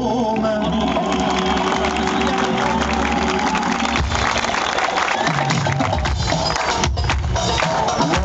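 Live band music played loud through a concert PA, with the audience cheering and clapping; the held notes change about halfway through.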